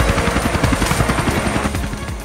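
Boeing CH-47 Chinook helicopter hovering low, its tandem rotors making a rapid, even blade chop.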